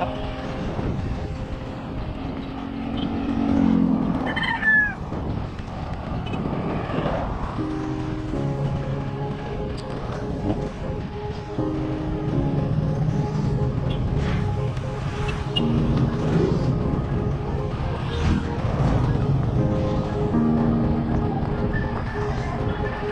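Background music with held notes changing about once a second, over a low steady rumble of wind and road noise from cycling.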